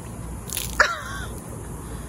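A woman's short, high-pitched yelp of surprise about a second in, falling in pitch. It comes just after a brief splash of water tipped out of a swim cap.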